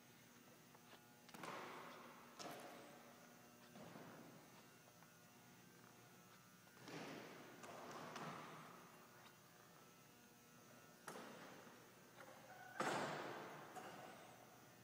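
Quiet room tone broken by a handful of faint thuds and knocks, the loudest near the end.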